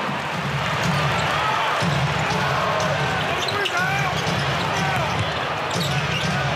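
Live basketball game sound in an NBA arena: a steady crowd hum, with a ball being dribbled on the hardwood and scattered short sneaker squeaks.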